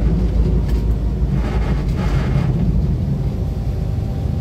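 Steady low rumble of an N class diesel-electric locomotive and its passenger train rolling slowly along the track, with a brief faint hiss about halfway through.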